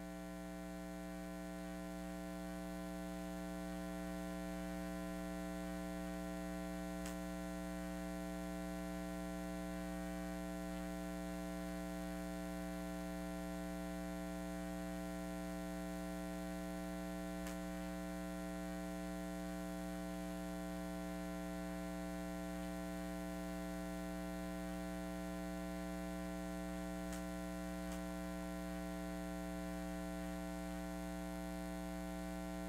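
Steady electrical mains hum with a buzz of many overtones, unchanging throughout, with a few faint clicks.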